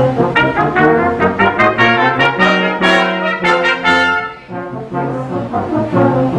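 Brass quintet of two trumpets, French horn, trombone and tuba playing a classical piece: a run of quick, separate notes for about four seconds, then a sudden drop to a softer passage.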